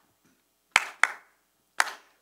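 Three sharp hand claps keeping the beat of an a cappella song, the first two close together and the third just under a second later.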